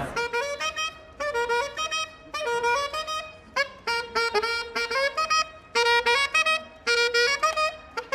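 A saxophone played solo and unaccompanied: a quick riff of short, repeated staccato notes in brief phrases with short breaks between them.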